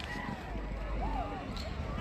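Faint outdoor background of distant voices over a low, steady rumble.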